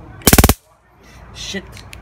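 Handheld taser sparking: a short, very loud burst of rapid, evenly spaced snapping clicks lasting about a third of a second, a quarter of a second in.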